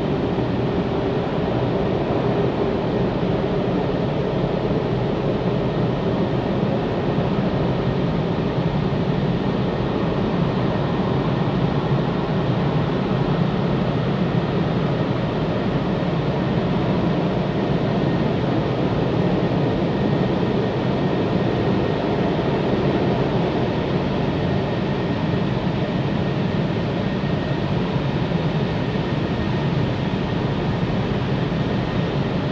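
Automatic car wash running, heard from inside the car cabin: a steady, even rushing rumble that does not let up.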